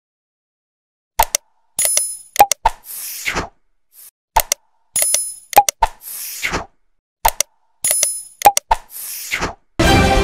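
Sound effects of an animated Subscribe-button graphic, played three times about three seconds apart: sharp clicks, a short bell-like ring, then a whoosh. Theme music comes in near the end.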